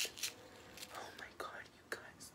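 Metal spoon scraping partly frozen coconut meat inside a young coconut shell, in a few short scrapes and clicks.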